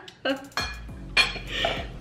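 Metal forks clinking and scraping against dinner plates during a meal, with several short sharp clicks.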